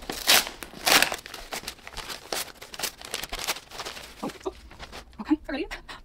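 White paper wrapping being crinkled and torn open by hand around a potted plant: a run of quick rustles and rips, busiest in the first second or so, then sparser.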